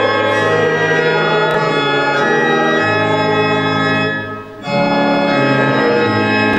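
Church organ playing slow, held chords. There is a short break between phrases about four and a half seconds in.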